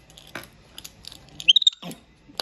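Small plastic clicks and pops of a pull-and-pop fidget toy being pushed and pulled, with a cluster of louder clicks and brief high squeaks about three-quarters of the way in.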